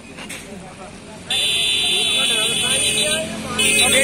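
A vehicle horn blares loud and steady for about two seconds, starting a little over a second in. It sounds again just before the end, over men's voices.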